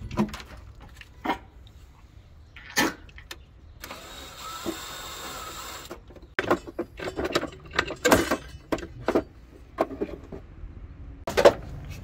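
Cordless drill-driver running steadily for about two seconds, driving screws at a parking heater's mounting, with sharp knocks and clatter of tools and parts before and after.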